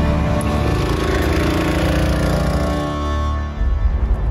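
Background music of sustained, layered tones, with a brief dip and change about three and a half seconds in.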